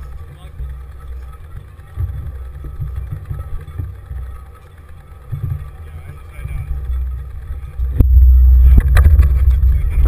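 Wind and road rumble buffeting a handlebar-mounted action camera as a cyclocross bike rolls slowly over grass and onto asphalt. The rumble is uneven and grows much louder near the end, with a couple of sharp knocks from the bike.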